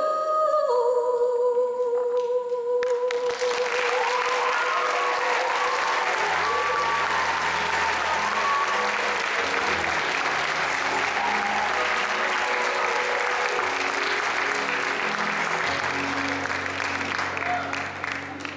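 A solo female voice holds the song's final long note for about three seconds, then audience applause breaks out and runs on over the accompaniment's low closing chords. It dies away near the end.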